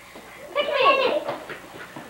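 A child's high-pitched voice calls out briefly, a short wordless exclamation whose pitch bends, about half a second in. Softer voices follow in a small room.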